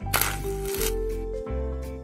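Background music: a steady bass under held notes that step up in pitch, with a brief hiss near the start.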